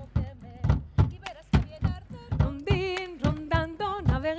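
Group of children singing a Riojan panaderas folk song, with a steady beat of hand claps about three a second under the voices.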